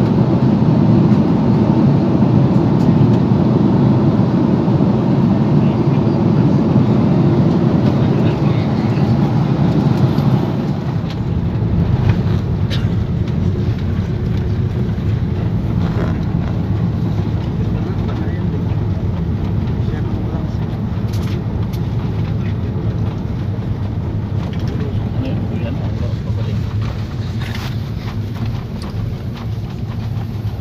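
Jet airliner cabin noise heard at a window seat: a loud, steady, deep rumble of engines and airflow in flight. About ten seconds in it drops to a lower, thinner hum as the plane is on the ground, with scattered clicks and knocks in the cabin.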